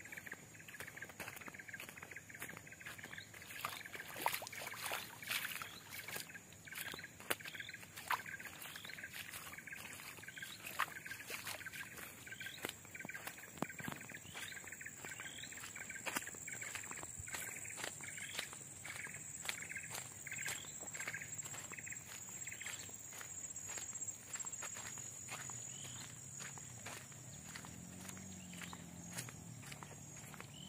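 Footsteps on a wet, muddy dirt road, a stream of irregular soft slaps and clicks. Behind them run a steady high-pitched insect drone and chirping from the roadside vegetation.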